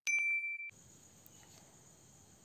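A mouse-click sound effect followed by a notification-bell ding: one steady ringing tone that cuts off suddenly about two-thirds of a second in, leaving faint hiss.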